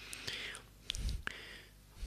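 A person's soft breath or whisper-like exhale close to the microphone, followed by a few small clicks and a low thump about a second in.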